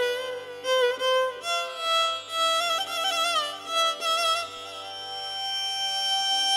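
Violin playing a slow, ornamented melody in Indian classical style, its notes wavering and sliding between pitches, over low held accompaniment notes that change about every two seconds.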